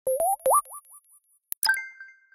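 Electronic logo-sting sound effect: two quick upward-gliding bloops, each repeated fainter as an echo, then a sharp click about one and a half seconds in and a bright chime that rings on and fades.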